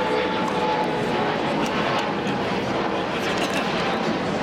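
Steady, loud outdoor background roar with a few faint ticks.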